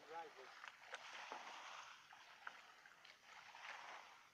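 Faint sloshing and scraping of a shovel and a rake being dragged through wet mud and shallow water, with scattered small clicks. A voice is heard briefly at the start.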